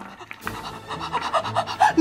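A woman laughing in quick, breathy bursts, about four a second, getting louder toward the end.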